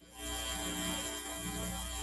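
Audio track of a demonstration video playing over the room's speakers: a steady hum with several held tones that starts abruptly.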